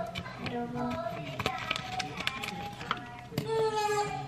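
Thin plastic salmon packaging being handled and pulled open by hand, crinkling and crackling in irregular sharp clicks. Quiet voices can be heard in the background.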